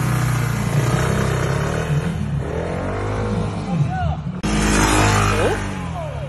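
A 150cc single-cylinder water-cooled scooter engine revving as the scooter pulls away, its pitch rising twice, under a loud rush of noise.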